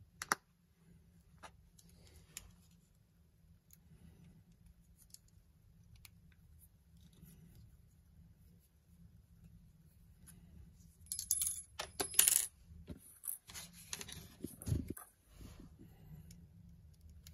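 Small metal clicks and clinks of a lens mount adapter, its tiny screws and a small screwdriver being handled against the lens mount. The clicks are sparse at first, with a quick run of sharp clinks about eleven seconds in and a duller knock shortly after.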